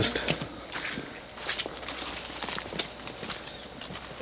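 Footsteps crunching irregularly on a trail covered in dead leaves, a few steps a second, over a steady high-pitched drone of rainforest insects.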